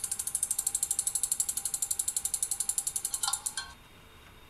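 A spinning name-picker wheel ticking rapidly as it turns, the ticks spacing out as the wheel slows. It comes to rest with a last few ticks a little over three seconds in.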